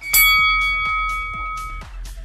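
A bell-like timer chime rings once just after the countdown ends and fades out over about a second and a half, marking the start of the exercise interval. Electronic background music with a steady beat plays underneath.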